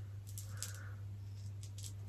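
Faint ticks and rustles of beaded box braids being handled, the small beads clicking now and then, over a steady low hum.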